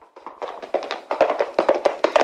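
Hoofbeats of a galloping horse: a quick, uneven clatter of strikes that grows louder over the first second, as if coming closer.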